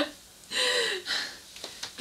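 A short breathy vocal sound with a falling pitch, lasting about half a second, a little after a brief bit of voice at the very start.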